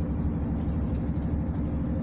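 Mercedes-Benz Actros truck's diesel engine running steadily under way, a low even drone heard from inside the cab.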